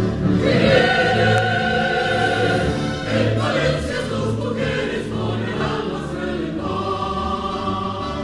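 Mixed choir of men's and women's voices singing in sustained, held chords, with a steady low beat underneath.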